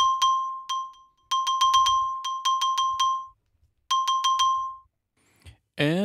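Sampled xylophone from the VSCO 2 Community Edition library playing three short runs of quick repeated notes on a single high pitch. Each run ends with a brief ring, and there are short silent gaps about a second in and again around three and a half seconds in.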